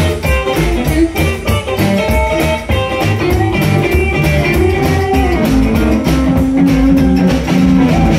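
Rockabilly honky-tonk band playing a guitar-led dance tune over a steady bass beat.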